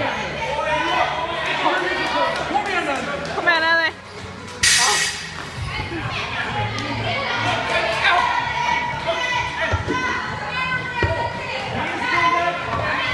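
Voices talking and calling out in a large, echoing gym hall over background music, with a single sharp thud about four and a half seconds in.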